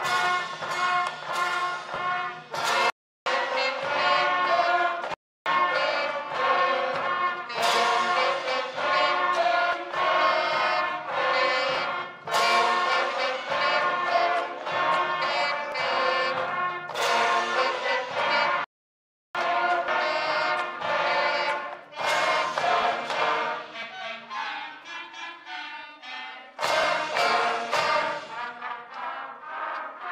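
Fifth-grade school concert band playing, with flutes, clarinets and brass together. The sound drops out completely for an instant three times, thins to a softer passage about two-thirds of the way through, then the full band comes back in.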